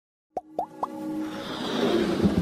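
Animated logo intro sting: three quick pops, each a short rising blip about a quarter second apart, then a swell of synthesized music that builds.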